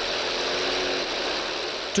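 Piston aircraft engine running steadily: a dense, even engine drone with a faint steady hum in it.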